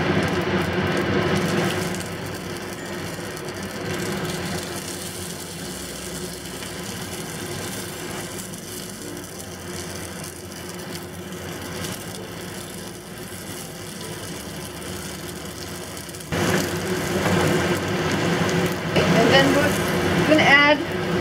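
Oil sizzling in a hot cast iron pan as chicken potstickers fry in it. The sizzle jumps louder about sixteen seconds in, once the pan is full and the potstickers are browning.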